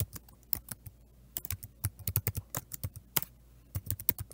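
Typing on a computer keyboard: uneven runs of quick key clicks, thickest in the middle of the stretch.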